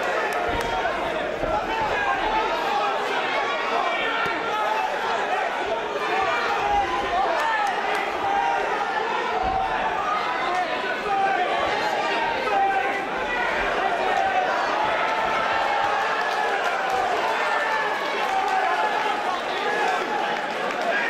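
Spectators shouting and yelling from around a fight cage, many voices overlapping at a steady, loud level, with a few dull thuds.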